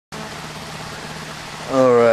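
Aquarium air pump pushing air through airstones in a bucket of tap water, a steady bubbling with a faint low hum, aerating the water to drive off chlorine. A man's voice starts near the end.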